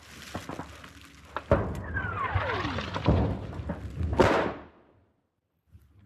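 Battlefield explosions: a sharp bang about a second and a half in, a whistle falling in pitch for about a second, then a louder blast a little after four seconds, after which the sound cuts out.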